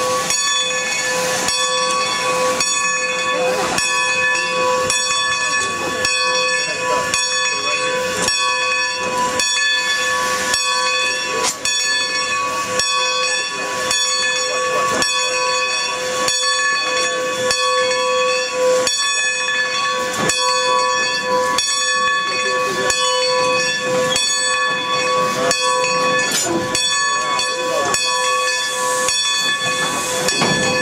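Steam locomotive No. 90, a Baldwin 2-10-0, standing close by with steam hissing and a steady whine of several tones, under a regular beat about one and a half times a second as it eases back onto its train to couple up.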